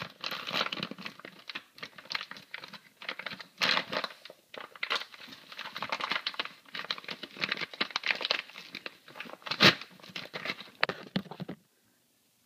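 Packaging being torn and crinkled as a boxed connecting rod is unwrapped: a long run of irregular rustling and crackling, with one sharper, louder crack near the end.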